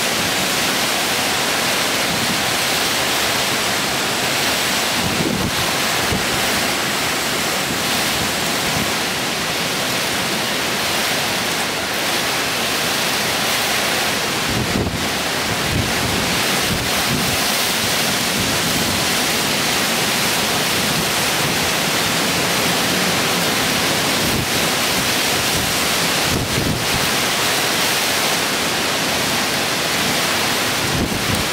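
Cyclone-force wind rushing through palms and trees as a loud, unbroken noise, with gusts buffeting the microphone in irregular low rumbles.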